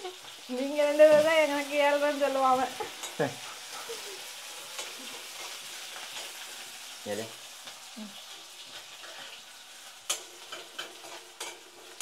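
Sliced small onions frying in a stainless steel kadai, with a steady sizzle while a steel spoon stirs and scrapes the pan; several sharp spoon clinks on the pan come near the end. About half a second in, a person's voice holds a long wordless note for about two seconds.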